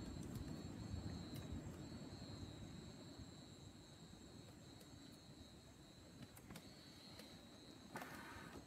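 Near silence with a faint, steady high chirring of insects, and a few faint clicks.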